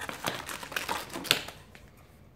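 Paper and cardboard being handled: a quick run of light clicks and rustles as folded paper manuals are taken out of a cardboard box. The loudest click comes about a second and a quarter in, and the sound dies away soon after.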